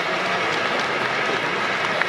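Large audience laughing and clapping, a steady wash of applause and laughter.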